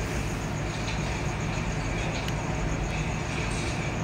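A steady hiss over a constant low hum, unchanging throughout.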